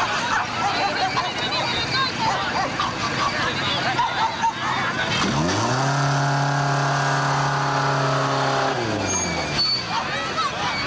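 Crowd chatter, then a Ford Anglia's four-cylinder engine revving up about five seconds in. It holds a steady high note for about three seconds as the car is driven round the course, then drops away near the end.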